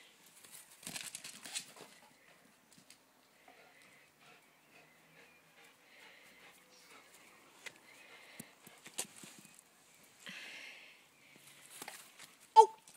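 A dog moving about on a lawn: faint scattered taps and a few short breathy rustles, the longest near the end.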